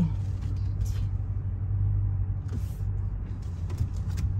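Car running at low speed, a steady low hum and rumble heard from inside the cabin as it rolls slowly.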